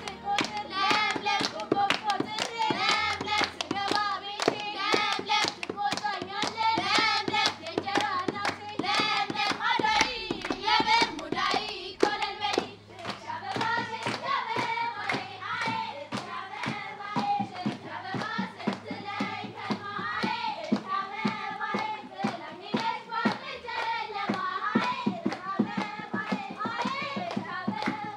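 Children singing an Ethiopian New Year song together, with steady rhythmic hand clapping throughout.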